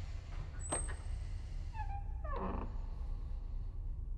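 Low steady rumble of a film soundtrack's ambient drone, with a sharp click just under a second in and a short creaking sound falling in pitch about two seconds in.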